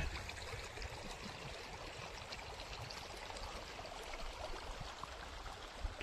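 Water running steadily in a small earth-and-grass irrigation channel, a faint, even trickling flow.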